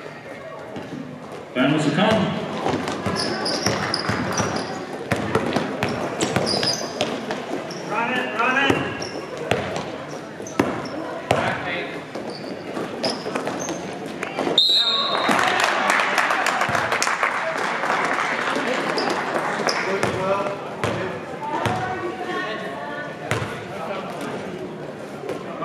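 Basketball game in a gym: a ball bouncing repeatedly on the court, mixed with players' and spectators' shouts and chatter. The noise steps up sharply about a second and a half in, and again about halfway through.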